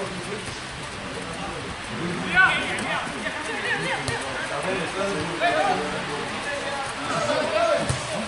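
Spectators and players shouting and calling out during a football match, with one loud shout about two and a half seconds in.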